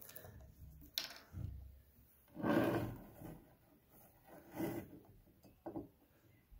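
Handling noise from a plastic soda bottle and a drinking glass being moved about: a few scattered rubs and knocks, the loudest a short rustling stretch about halfway through.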